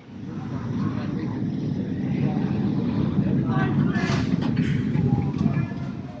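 Steady low rumble of amusement ride cars running on steel track. It builds over the first second and eases off near the end.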